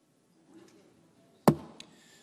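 Faint hall room noise, then one sharp, loud wooden knock about one and a half seconds in, followed by a fainter click.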